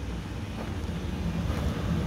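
Steady low rumble of wind buffeting the microphone outdoors, with a faint low hum coming in near the end.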